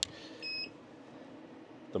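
A single short, high-pitched electronic beep about half a second in, over a faint steady hum.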